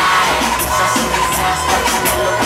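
Live reggaeton performance through a loud concert sound system: a steady beat with a vocal over it, and a crowd shouting along.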